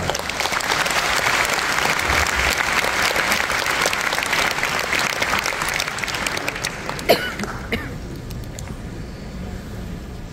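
Audience applauding in a large hall: a full round of clapping that thins and dies away after about eight seconds. A single brief, louder sound stands out about seven seconds in.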